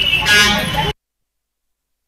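Crowd of people talking with a steady high-pitched tone underneath and a short, louder pitched sound about a third of a second in; the sound cuts off abruptly to dead silence just under a second in.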